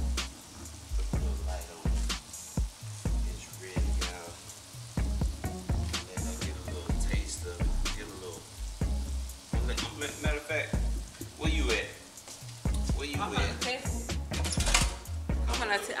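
Diced chicken frying in oil in a skillet on a gas burner, sizzling steadily, with scattered clicks and scrapes in the pan.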